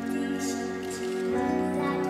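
A young girl singing a slow, tender stage-musical song over sustained instrumental chords.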